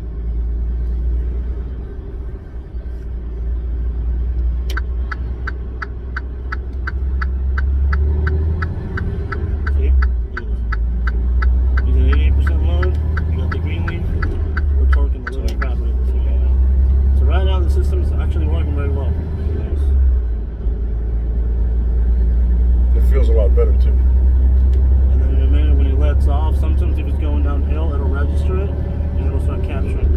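Semi-truck cab interior with a steady low engine and road rumble that gets louder after about eight seconds. A turn-signal clicker ticks about three times a second from about five seconds in until about fourteen seconds in.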